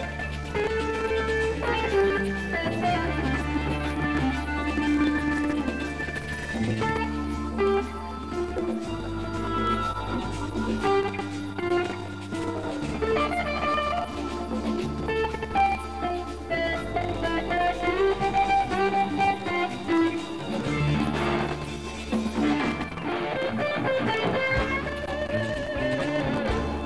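Live band music with an electric guitar playing a melodic lead over a sustained bass line that changes note every couple of seconds.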